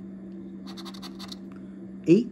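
A coin scratching the coating off an instant lottery scratch ticket: a quick run of short scratching strokes lasting under a second, starting about two-thirds of a second in. A steady low hum runs underneath.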